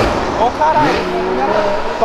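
A car passing on the street, its engine and tyre noise fading away, with people's voices over the traffic.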